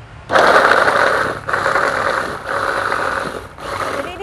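Electric mini food chopper whirring as its blades chop chillies, shallots, garlic and galangal into a spice paste, run in three pulses of about a second each.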